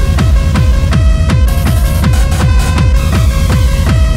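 Loud, fast electronic dance music in the makina style: a regular kick drum on every beat under repeating synth stabs, coming in at full level right at the start.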